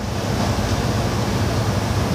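A steady rushing noise with a faint low hum underneath.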